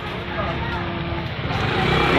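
A motor vehicle's engine running steadily, with people talking over it.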